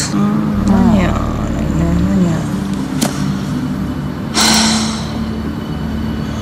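A woman's voice making short wordless sounds, then a breathy sigh about four and a half seconds in, over a steady low hum. A held musical note comes in with the sigh and carries on to the end.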